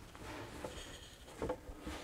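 Faint rubbing and handling of a carpeted car-boot load-floor panel, with a light knock about one and a half seconds in.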